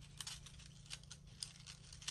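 Faint rustling and scattered soft ticks of cardstock being handled, as slotted paper pieces are slid into each other's slits.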